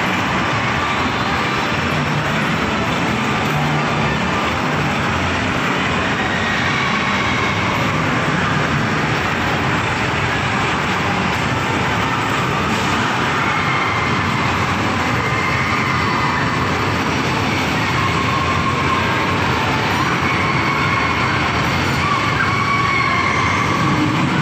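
Loud, steady din of an indoor amusement park, with a small roller coaster's train rolling along its steel track.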